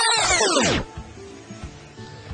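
A loud edited-in sound effect made of many overlapping sliding tones that rise and fall back in pitch. It stops abruptly under a second in, leaving only faint background music.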